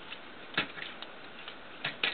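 Plastic clicks and snaps from a Transformers Deluxe Bumblebee action figure as its limbs and panels are moved and pegged into place during transformation to robot mode. A sharp click comes a little over half a second in and another near the end, with lighter ticks between.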